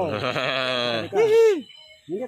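A man's voice: a long, wavering drawn-out cry, then a loud shouted 'udah' just over a second in.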